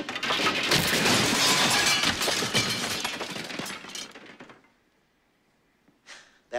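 A weapons rack collapsing: a long crash of wooden staffs and weapons clattering down onto a wooden floor, lasting about four seconds and dying away into silence.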